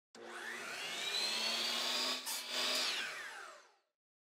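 An electric motor whirring up to speed, its pitch rising steadily. It dips for a moment about two seconds in, runs on briefly, then winds down, falling in pitch and fading out just before the end.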